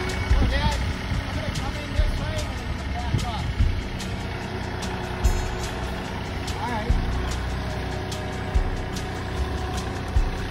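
A John Deere compact tractor's diesel engine running steadily as the tractor creeps along with a heavy load on its front loader, with low thumps about every second and a half.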